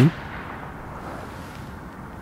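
A brief sharp burst at the very start: a man's word cut off after its first syllable. Then steady low outdoor background hiss, wind on the microphone.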